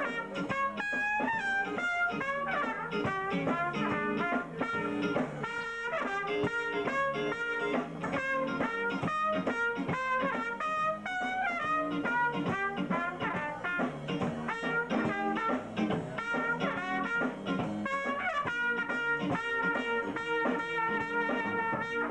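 A jazz band with brass playing live, a trumpet running fast melodic lines over the band. The horns settle into held notes near the end.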